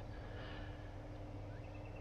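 Faint steady background hiss with a low hum, with no distinct events.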